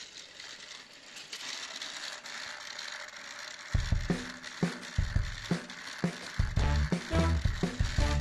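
For the first few seconds there is only a quiet, even rattle, like a battery-powered toy train running along plastic track. About four seconds in, background music with a steady beat comes back in and covers it.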